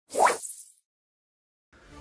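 A single short plop-like sound effect, rising quickly in pitch with a brief airy swish, lasting about half a second, followed by dead silence.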